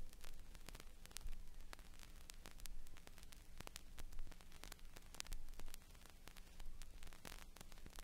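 Vinyl record surface noise: a steady crackle with frequent sharp clicks and pops from the stylus in the groove, over a low steady hum, with louder bursts of crackle recurring about every second and a half.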